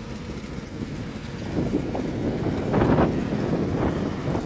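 Harley-Davidson Road Glide V-twin motorcycles idling with a low, steady rumble that grows louder in the second half.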